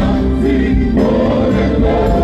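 Live gospel worship music: a lead singer and a group of backing singers sing together over electronic keyboards and bass, loud and continuous.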